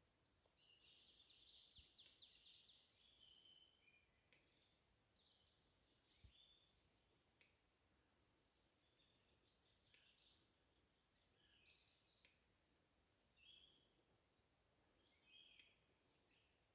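Faint songbirds singing: many short high chirps and trilled phrases, with a denser trill about one to three seconds in.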